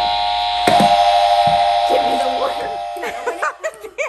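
Electronic buzzer tone from a push-button game, a steady buzzing note held for about three seconds before fading away, with children's voices over its end.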